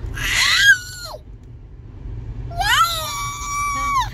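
A toddler squealing twice in high-pitched shrieks: a short one that rises and then drops away about a second in, and a longer, held one near the end. A steady low car-cabin hum runs underneath.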